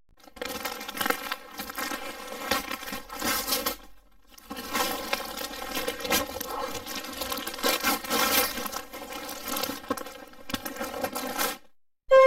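Wrapping paper being torn and crumpled as a gift is unwrapped, with a short pause about four seconds in.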